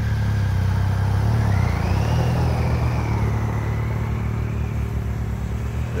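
Two adventure motorcycles, a BMW GS and a Triumph Tiger, pulling away and riding off, their engines rising as they move off and then gradually growing quieter as they go.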